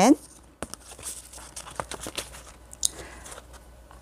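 Round paper mouth-model card being handled and turned in the hands: light paper rustling with a scatter of small irregular clicks.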